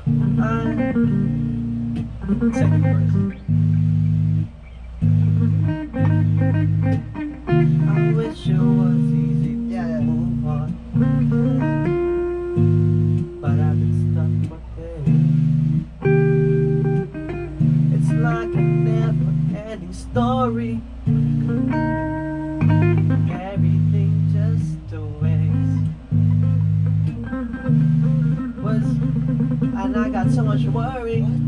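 Electric guitar and electric bass playing together: the bass holds low notes in a steady rhythm, about one a second with short breaks between, under picked guitar notes and bends.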